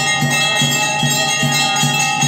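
Bells ringing continuously over a steady drum beat, about two and a half beats a second.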